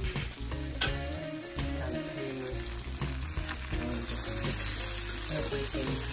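Chicken pieces, sliced onion and green bell pepper sizzling in a hot frying pan while a plastic spatula stirs them together.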